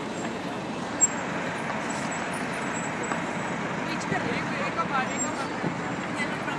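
Steady city street noise of traffic, with faint voices of passers-by about four to five seconds in and a single short click about a second in.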